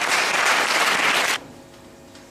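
Audience applauding, cut off abruptly a little over a second in.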